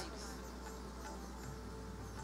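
A pause in speech: a steady low hum with faint background noise through the microphone and PA system.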